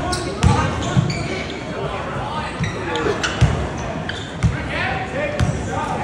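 A basketball being dribbled on a hardwood gym floor, giving irregular low bounces about once a second.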